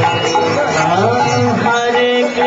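Devotional kirtan music: a held sung note slides upward about a second in, over sustained accompaniment.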